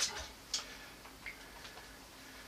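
A few faint, light clicks, roughly half a second apart, from a plastic highlighter pen being handled and capped.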